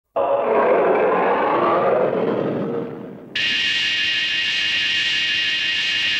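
Intro sound effects: a rushing whoosh that starts abruptly, swells and fades over about three seconds. Then a steady high-pitched tone of several pitches at once cuts in suddenly and holds.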